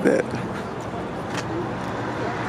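Background voices of people talking over a steady outdoor hubbub. A voice is heard briefly at the start, and there is a single click about one and a half seconds in.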